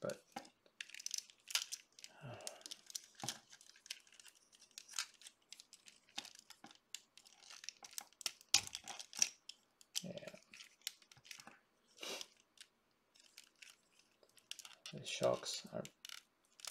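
Plastic parts of a 1/12-scale Sentinel VR-052T Ray action figure clicking and scraping as they are handled and worked into place, in irregular small clicks and rustles.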